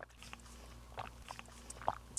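Several people sipping juice from small cups: faint scattered sips, swallows and small clicks in a quiet room.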